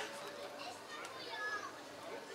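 Soft chatter of children's voices between pieces, with no music playing.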